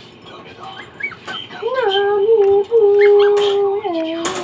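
A dog whining: a few short, high whimpers, then a long, steady whine from about a second and a half in.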